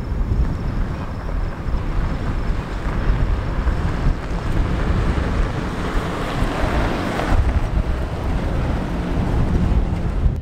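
Wind buffeting the microphone with a low, uneven rumble, over a Nissan Titan pickup rolling slowly along a gravel road. The truck is a little louder as it passes close, about six to seven seconds in.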